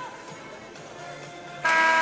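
Faint music under arena background sound. About one and a half seconds in, a loud, steady pitched tone starts suddenly, from the arena's sound system or horn.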